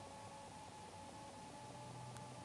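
Near silence: faint room tone with a few faint steady tones.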